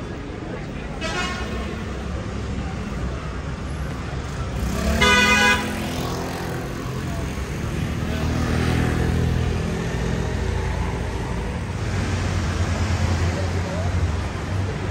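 Vehicle horn honking in street traffic: a faint short toot about a second in, then a loud honk lasting about a second near the middle. A steady low traffic rumble runs underneath.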